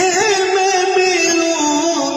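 A man singing an Urdu devotional kalam through a microphone, holding a long ornamented note that wavers and slides slowly downward.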